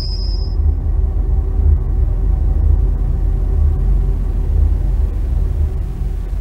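Deep, steady bass rumble of a TV programme's bumper ident, opening with a brief high shimmering tone that fades out within about half a second.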